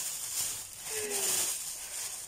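Rustling and rattling of shopping bags and packaging as groceries are handled, with a brief faint voice about a second in.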